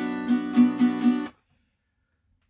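Acoustic guitar strumming a B minor barre chord (224432), about four strums a second, cutting off suddenly about a second and a half in.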